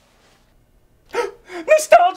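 A man's voice gasping: about a second of near silence, then a few sharp, breathy gasps, the last one voiced and loudest at the very end.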